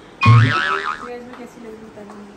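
A comic cartoon sound effect: a deep thud about a quarter second in, followed by a wobbling spring-like boing that warbles for under a second and fades.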